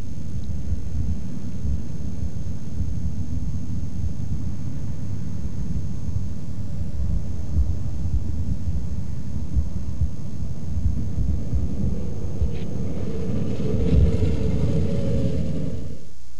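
Steady low wind rumble on the microphone while an Avid light aircraft glides in with its engine at power-off, so little engine sound is heard; a faint hum grows in the last few seconds as the plane passes close.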